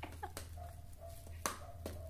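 A few faint sharp clicks from hands handling a phone and a plastic bag, over a low steady hum, with a faint thin whine in the middle.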